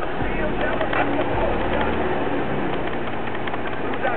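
Rap song playing on the car stereo, its deep bass notes coming through four 15-inch Alpine Type R subwoofers on a Hifonics XX Goliath amplifier, heard inside the car's cabin. The bass notes come and go, strongest at the start and again around the middle.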